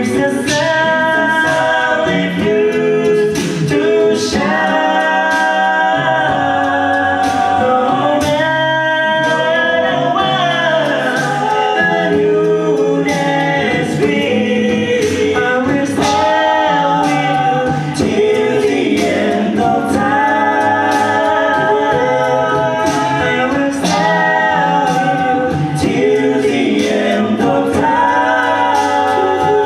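Male a cappella group of six singing in several-part harmony into microphones, with vocal percussion keeping a steady beat of sharp clicks.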